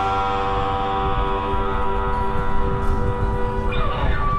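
Rock band's final chord ringing out: electric guitars held through the amplifiers as a steady sustained chord, slowly fading after the last strum and cymbal crash.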